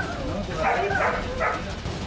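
A dog barking several times in short calls about halfway through, with people's voices alongside.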